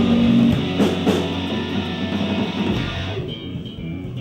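Live rock band playing, led by electric guitar over drums; about three seconds in the sound thins out and grows quieter as the cymbals drop away.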